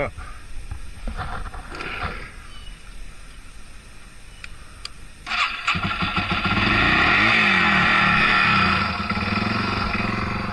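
Dirt bike engine starting about five seconds in, then running steadily, a little louder for a few seconds before settling slightly near the end.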